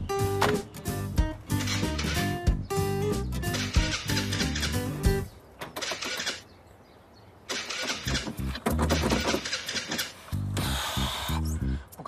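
Background music with a steady beat that breaks off about five seconds in. After a short lull, a classic car's engine is cranked over in repeated bursts and fails to start.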